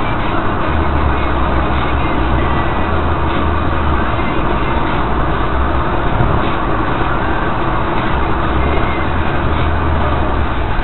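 Steady road and engine noise inside a car's cabin at highway speed, tyre roar over a low drone that swells and eases every few seconds.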